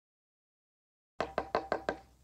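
Silence, then a little over a second in, five quick knocks, about six a second, each ringing briefly.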